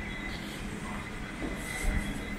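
Steady background hum of a large store, with a low drone. A brief thump with a rustle near the end is the loudest moment.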